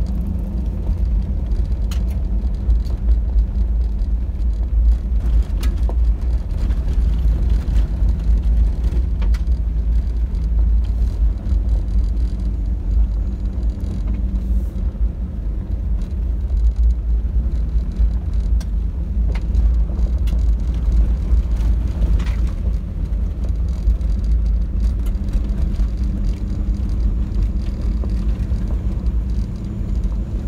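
A vehicle driving on a gravel dirt road, heard from inside the cab: a steady deep rumble of engine and tyres on the gravel, with a few sharp clicks scattered through.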